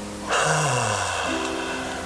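A person's long audible sigh: a breathy exhalation with a falling voiced tone, starting about a third of a second in and fading over about a second, over soft guitar background music.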